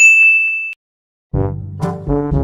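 A single bright ding, a bell-like sound effect, ringing for under a second and then cut off sharply. After a short silence, brass music starts about a second and a half in.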